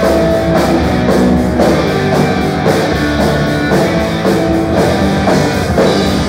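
Rock band playing live and loud: electric guitars over a drum kit.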